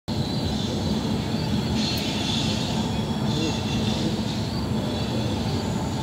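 Passenger train approaching from far down the line: a steady low rumble with a faint hiss above it.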